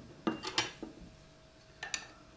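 Light metallic clinks and taps from a spoon and the lid of an Afghan kazan pressure cooker being handled: a few in the first half-second and a couple more near the end, with little sound between.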